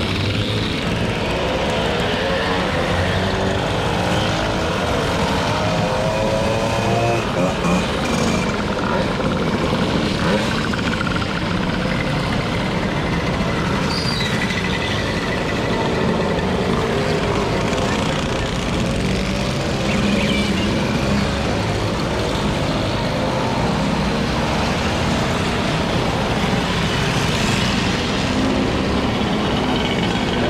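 A long procession of small two-stroke mopeds riding past one after another, many engines running at once in a steady, overlapping buzz, with engine notes rising and falling as riders pass and change throttle.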